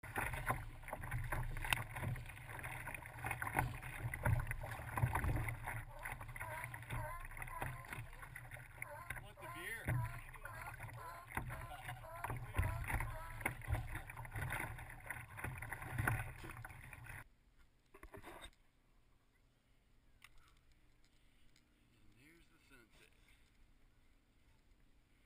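Water sloshing and slapping against a kayak's hull as it moves through the water, with irregular knocks, muffled and boomy through a GoPro's waterproof housing. About seventeen seconds in it cuts to near silence.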